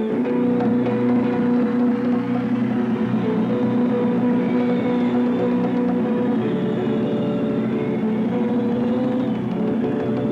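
Live band playing an instrumental passage with guitars and electric bass, a steady groove of held chords with no singing.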